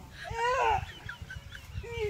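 A chicken calling: one high call that rises and falls in pitch, followed by a few short, high chirps.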